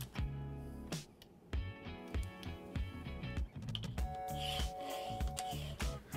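Quiet background music with plucked pitched notes over a soft beat, and one held note a little over a second long about four seconds in.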